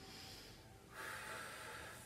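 A woman's slow, deep breath, faint, growing louder about a second in.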